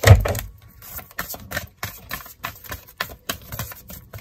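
A deck of oracle cards being shuffled by hand: a dull thump at the start, then a run of quick, irregular clicks of cards slipping over one another.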